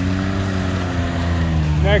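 Engine of a lifted Can-Am Maverick X3 side-by-side running steadily as it churns through a mud hole, its pitch rising slightly and easing back down.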